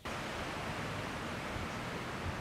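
A steady, even rushing noise of wind in the trees and on the microphone, starting suddenly at the very beginning.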